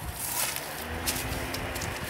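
Outdoor rustling and scuffing from someone moving about on foot, over a faint steady hum.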